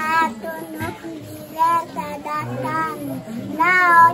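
A young girl's voice reciting a Bible verse aloud in a local language, in drawn-out phrases that rise and fall in pitch with short pauses between them, the loudest phrase near the end.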